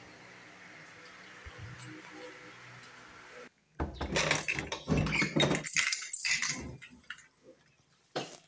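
Keys hanging in a door lock jangling and clinking against the metal lever handle as the door is worked, a loud irregular clatter starting about four seconds in after a faint quiet stretch.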